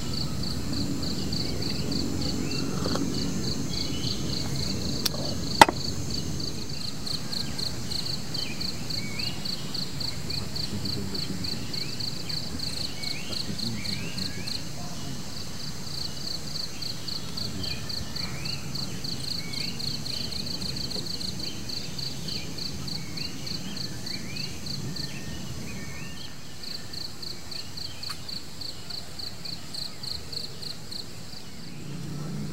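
Forest ambience: an insect chirping in a fast, even pulse throughout, with scattered short bird chirps and a low background rumble. Two sharp clicks come about five seconds in.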